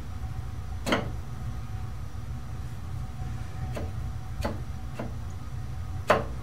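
Four light metallic clicks and taps from hand-adjusting a tool in a lathe tool post and setting a steel rule against it to check tool height, the first about a second in and the loudest. A steady low hum runs underneath.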